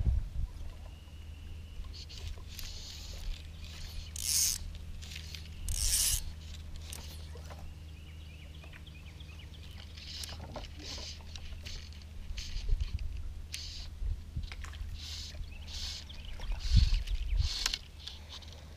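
Fly line being stripped in by hand through the rod guides in short hissing pulls, bringing in a small hooked fish, over a steady low hum. The pulls come a few at a time, with two longer ones early on and a quicker run in the second half.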